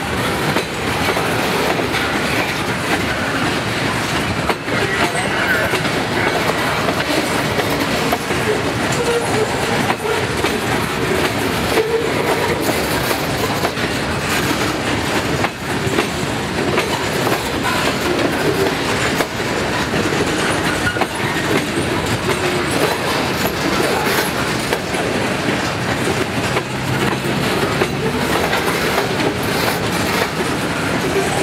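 Freight train of covered hopper cars rolling past: a steady rumble of steel wheels on rail, with repeated clicks as the wheels cross the rail joints.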